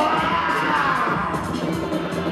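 Live electronic music played on a table of electronic gear: a steady beat with a long, held tone that slides slowly down in pitch over the first second or so.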